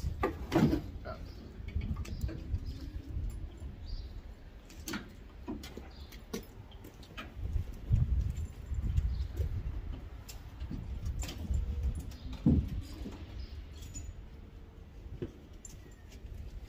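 Scattered clicks and metal knocks from hands working on the sheet-metal casing of a central air conditioner's outdoor unit, over a steady low rumble. The loudest knocks come about half a second in, around eight seconds and past twelve seconds.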